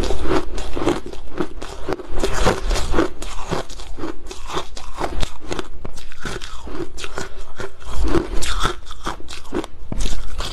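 Close-miked crunching of refrozen, frost-coated ice being bitten and chewed in the mouth, a rapid, uneven run of crisp crunches throughout.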